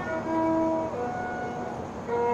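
Violin playing a slow melody of long held notes, each sustained for about half a second to a second before moving to the next.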